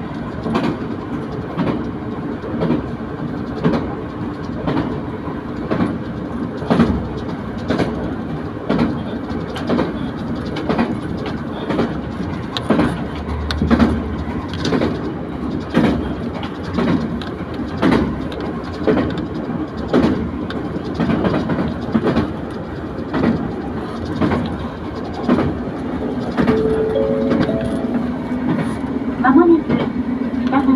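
A diesel railcar running at speed, heard from inside the car: a steady rumble and hum, with the wheels clicking over rail joints about once a second.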